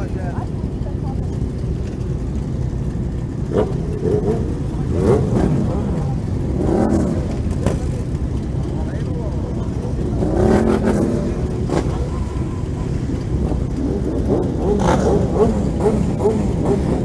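Motorcycle engines running at idle in a group of parked bikes, with engines revved up and back down a couple of times, about five and ten seconds in. People talk in the background.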